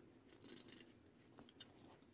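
Near silence: room tone with a few faint, soft clicks and rustles about half a second in.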